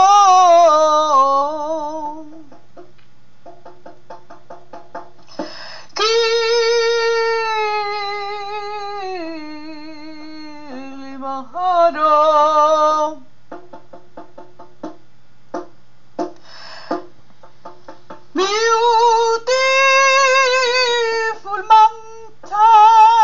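A woman singing long held notes with a wavering vibrato and no clear words, over a sparse plucked guitar accompaniment. Between the sung phrases, the guitar is heard plucking alone.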